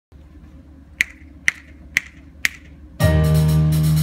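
Four sharp clicks, about two a second, count off the tempo; then, about three seconds in, the jazz big band comes in all together on a loud held chord of saxophones, brass and bass.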